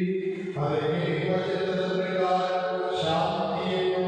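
Sung liturgical chant of a Catholic mass. Long held notes step to a new pitch about half a second in and again at about three seconds.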